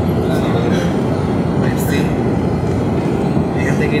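Airliner cabin noise in flight: a steady, loud low rumble of engines and rushing air.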